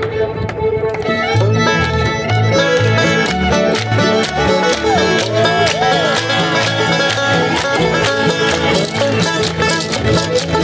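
Live bluegrass-style string band led by a bowed fiddle, playing an upbeat tune over a steady bouncing bass beat, the full band filling in about a second in.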